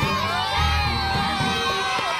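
A crowd of schoolchildren shouting and cheering excitedly, many high voices at once, with one long held cry rising above the rest.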